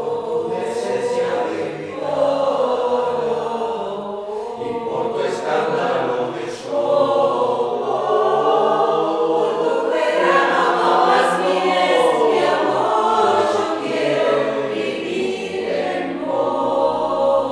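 Mixed choir of men and women singing a polyphonic arrangement unaccompanied, in sustained chords that swell louder about seven seconds in.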